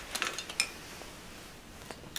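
A few faint clicks and light knocks of handling in the first second, then quiet room noise. No amplified guitar is heard: the valve amp gives nothing out, as no speaker is connected.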